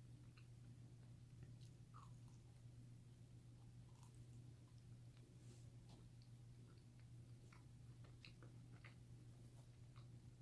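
Faint closed-mouth chewing of a mouthful of pizza: soft, scattered mouth clicks over a low steady hum.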